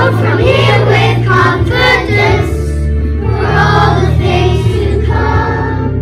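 A class of young children singing together in unison, with a steady instrumental accompaniment underneath.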